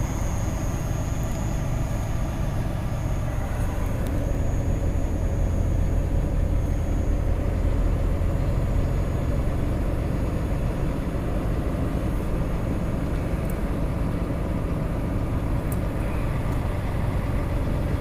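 Heavy truck's diesel engine running steadily as it climbs a hill slowly, a deep continuous rumble heard from inside the cab, with a faint high whine over it for the first several seconds.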